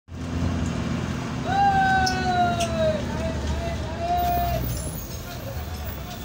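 Passenger train running, a steady low rumble heard through an open carriage window. About one and a half seconds in, a loud long high-pitched call slides slowly down in pitch, followed by a shorter wavering one.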